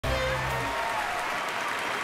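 Theatre audience applauding, with a low held chord of music ending within the first second and fainter music carrying on under the clapping.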